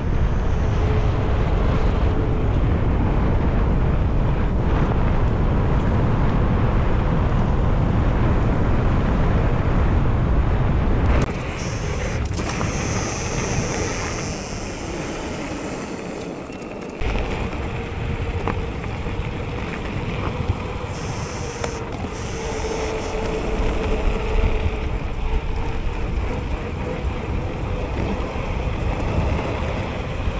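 Wind buffeting the camera microphone, with tyre noise, as a mountain bike rolls quickly downhill on a paved road. The noise drops suddenly about eleven seconds in and rises again a few seconds later.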